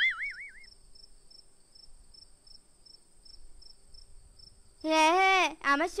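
Faint night-time crickets chirping steadily as background ambience, about three chirps a second. It opens with a brief wavering whistle and gives way to a cartoon character's voice near the end.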